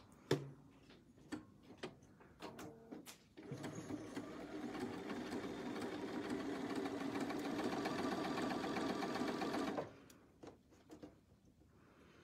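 Bernina 570 computerized sewing machine stitching a seam along a zipper at a steady speed for about six seconds. It starts a few seconds in and stops abruptly near the end, with a few light clicks of handling before it.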